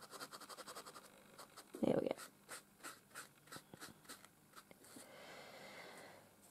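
Quick light dabs of a tissue on a small painted canvas, a run of soft taps at about three or four a second, with a short stretch of rubbing near the end.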